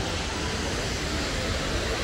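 Steady, even hiss of outdoor street noise from passing traffic, with an unsteady low rumble underneath.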